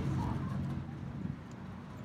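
Beer glugging from a bottle into a tilted glass, over a low steady rumble.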